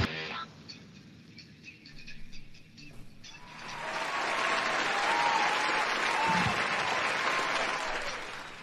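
A band's heavy rock song stops abruptly just after the start. After about three seconds of near quiet, applause swells up and holds, with a few short high-pitched notes over it.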